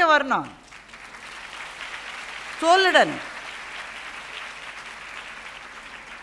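Audience applauding steadily for about five seconds, starting just under a second in, with a short spoken phrase at the start and another about three seconds in.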